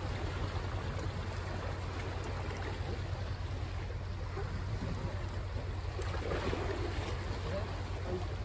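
Steady wind noise on the microphone, with the wash of sea waves against the shore.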